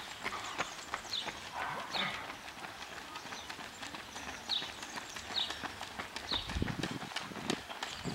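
Running footsteps of road-race runners slapping on asphalt as they approach and pass close by, a quick irregular patter of footfalls, with a heavier low thud about six and a half seconds in.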